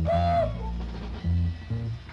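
Live jazz band playing: a horn phrase ends on a short held note about half a second in, over changing bass notes, and the band carries on beneath.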